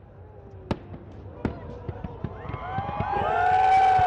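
Fireworks going off: sharp bangs and crackles, the two largest about a second apart. Then a crowd's voices rise into loud shouting near the end, the loudest part.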